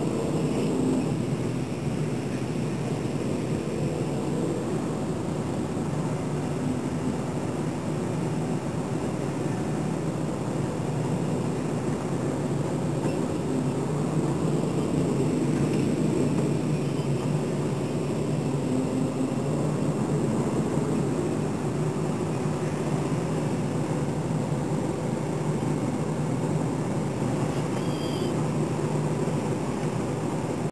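Steady drone of many engines in slow, dense traffic of motorcycles, scooters and cars creeping along together.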